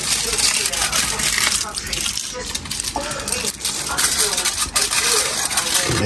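Aluminium foil crinkling, with light metallic clinks and rattles from handling at the stove and oven.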